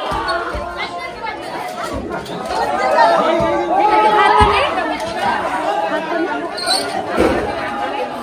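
Crowd of men chattering and shouting over one another in a street, with a few dull thumps scattered through.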